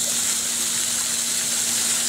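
Garden hose pistol-grip spray nozzle spraying a jet of water onto a swimming pool's surface: a steady hiss and splash that starts abruptly as the nozzle is squeezed open, adding fresh water to the pool.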